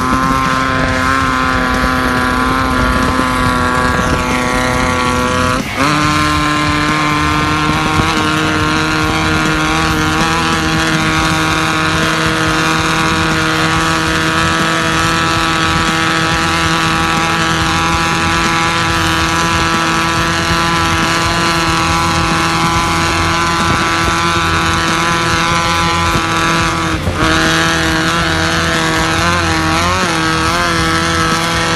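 Off-road race buggy's engine running at a steady high speed, heard from a vehicle pacing alongside, with road and wind noise. The engine note dips and changes pitch briefly about six seconds in and again near the end.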